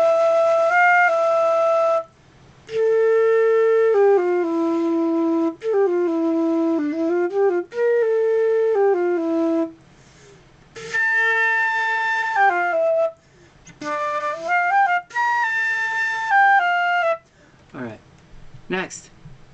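A flute plays a simple beginner exercise of held notes in about seven short phrases, with brief breaks for breath between them. A few notes waver in pitch partway through.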